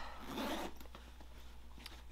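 Short rasping rustle of a knitted sweater-in-progress and its surroundings being handled and picked up, lasting about half a second near the start, then fainter handling noise.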